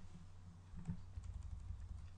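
Faint clicks and soft low thuds of a computer being operated as the page is scrolled, over a steady low electrical hum.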